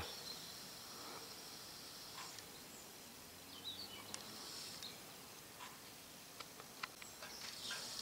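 Faint outdoor ambience: a steady high-pitched hiss with a few faint chirps about halfway through and scattered soft ticks.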